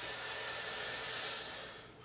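A person breathing out in one long, steady hiss of breath that fades away near the end.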